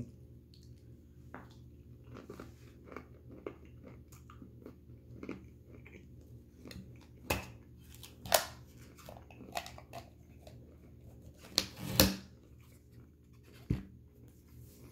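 A person crunching and chewing peanuts with the mouth closed: irregular crunches, a few sharper and louder ones in the second half.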